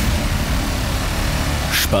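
Podcast intro jingle: a steady low bass under a loud, even rushing noise effect.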